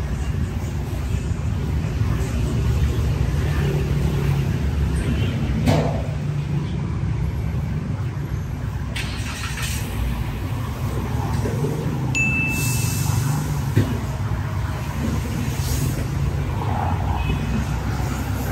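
Street traffic: motor scooters and cars driving past on a city road, a continuous low rumble with passing swells. A brief high beep sounds about twelve seconds in.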